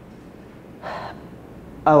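A man draws one short, audible breath about a second in.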